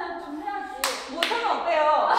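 Two sharp hand claps, a little under a second in and again about a third of a second later, amid young women talking.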